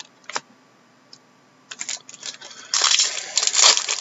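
Trading cards and their foil pack wrappers being handled at a table: a single click, then scattered sharp clicks, building to a dense, loud crackling in the last second or so.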